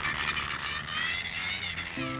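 Cartoon sound effect of small cars driving off quickly: a steady hiss-like whoosh with a faint low hum underneath.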